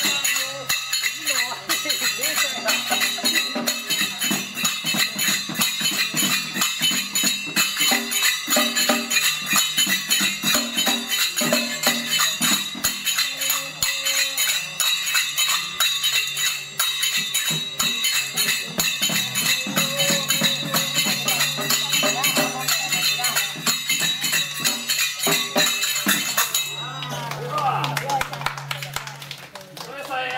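Ise Daikagura accompaniment music: a steady, rapid run of metallic jingling percussion strokes, with lower tones beneath. It stops about three seconds before the end.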